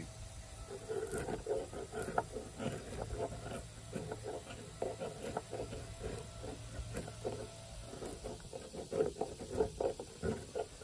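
Knife blade shaving and scraping bark off a freshly cut forked branch in a run of short, uneven strokes, a few of them sharper and louder near the end.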